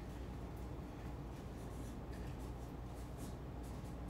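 Quiet room tone with a steady low hum and faint scattered scratches and light ticks of objects being handled.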